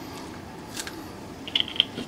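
Mellif 20-volt battery-powered car refrigerator running with a steady whir. A faint click comes about a second in, and a short run of light clicks follows about one and a half seconds in.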